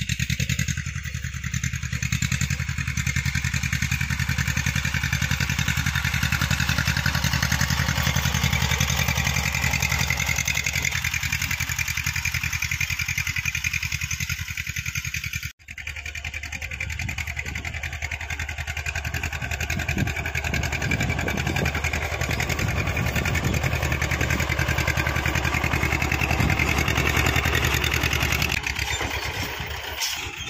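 Massey Ferguson 35 tractor's diesel engine running steadily under load while pulling a tillage implement through the soil. There is a brief break in the sound about halfway through.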